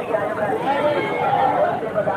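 Background chatter of a crowd, many voices talking at once with no single voice standing out.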